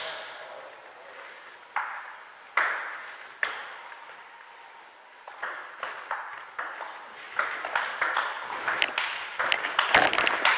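Table tennis ball clicking on paddles and table: a few separate clicks in the first few seconds, then a rally from about five seconds in, the hits and bounces coming thicker toward the end.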